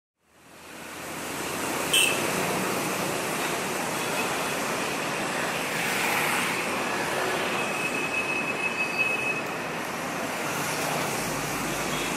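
Steady rush of wind and road noise from a moving motorcycle, fading in at the start, with a brief click about two seconds in.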